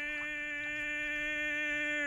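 Cartoon Tyrannosaurus's voice holding one long, steady open-mouthed cry at a single pitch, dropping in pitch as it cuts off at the very end.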